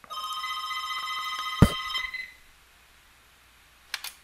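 A steady electronic ringing tone of several pitches at once, lasting about two seconds, with one sharp click about one and a half seconds in.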